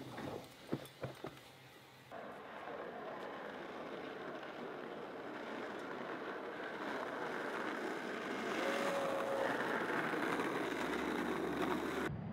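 Village street ambience: the steady hiss of road traffic, slowly growing louder as a car approaches, with one short tone about nine seconds in. A few faint knocks come before the street sound begins about two seconds in.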